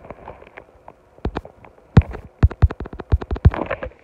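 A run of sharp knocks and clicks right on a phone's microphone as the phone is handled and moved. They come a few at a time at first, then quickly and close together from about two seconds in.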